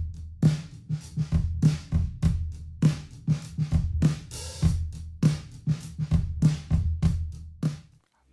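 An isolated drum-kit track rendered from Band-in-a-Box RealDrums (the BluesPopBusySnare style) plays back on its own. It is a steady kick, snare and hi-hat groove with no other instruments, and it stops just before the end.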